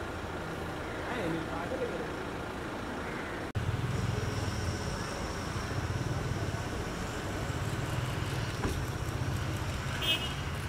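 Street traffic noise with a motor vehicle engine running. About a third of the way through there is a sudden break, after which a steady low engine hum is louder.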